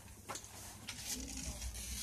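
Handling of a large plastic beer bottle and the padded sleeve of a jacket: faint rustling and small clicks, growing louder near the end.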